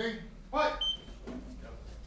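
A man's voice calls out twice, the second call louder, to start an MMA round. About a second in, a brief high electronic beep sounds from the fight clock, signalling that the round has begun.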